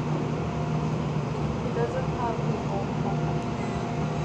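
Steady low hum and whir of a subway car's air conditioning and onboard equipment while the train stands at a station with its doors open, with faint voices.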